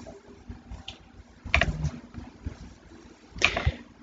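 Quiet desk sounds of someone working a computer mouse: a few faint clicks and short rustles as a line is drawn on screen, with a brief breath-like noise near the end.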